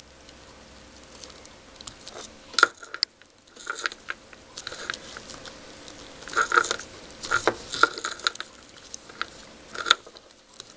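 Paper card embellishments being handled and pressed into place by fingers close to the microphone: irregular crinkling and rustling with a few sharp crackles.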